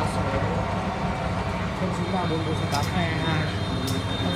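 Small stainless-steel centrifugal spin dryer with a 370 W electric motor running, its basket spinning with a steady low hum; it runs smoothly and quietly.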